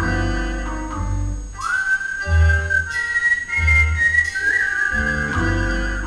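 Live jazz pit band music: a high, held melody line that scoops up into its notes, over pulsing bass and plucked chords.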